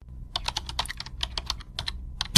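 Computer keyboard typing: a fast run of key clicks, about nine or ten a second, starting abruptly out of silence over a low steady hum.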